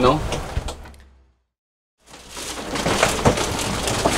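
Wind and sea noise fading out to a moment of silence, then knocks and clatter of gear being handled while rummaging in an under-seat locker below deck on a sailboat.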